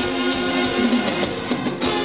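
Live Mexican banda music: a trumpet section and other brass playing held notes over a steady drum beat.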